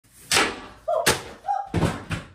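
A quick, uneven series of about five sharp thumps or knocks, with two brief voice-like sounds between them.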